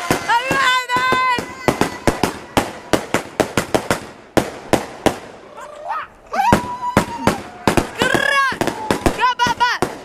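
Fireworks going off in a rapid, irregular string of sharp bangs and crackles. People whoop and shout over them in high voices near the start and again several times later on.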